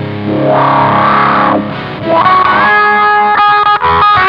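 Electric guitar played through a Morley Power Fuzz Wah pedal into a Randall RD20 amp. First a fuzzed chord whose tone sweeps brighter and fades. Then, about two seconds in, sustained lead notes bent upward, with a few quick choppy breaks near the end.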